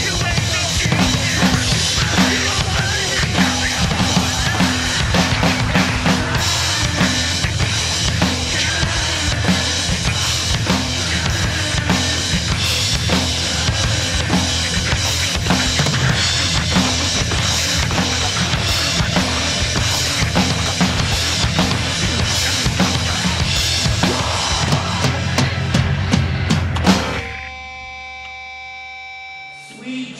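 Acoustic Yamaha drum kit played hard in a driving rock beat of kick, snare and crashing cymbals, along with the recorded song. The drumming stops abruptly about 27 seconds in, leaving a quieter sustained ringing chord that fades out.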